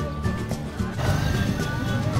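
Background music with a pulsing low beat and held, gliding melody notes.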